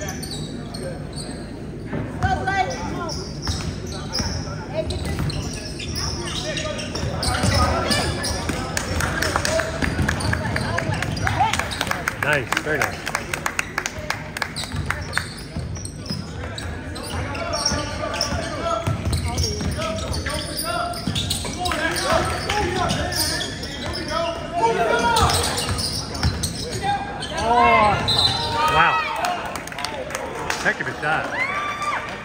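A basketball being dribbled on a hardwood gym floor during play, a run of sharp bounces, with voices of players and onlookers in the background in the large gym.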